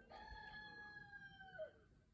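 A rooster crowing once, faint: one long, held call of about a second and a half that drops in pitch at the end.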